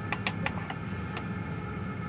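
Small sharp metallic clicks and taps as parts are handled inside a tractor transmission housing: a quick cluster of about six in the first half second and one more about a second in, over a steady low hum.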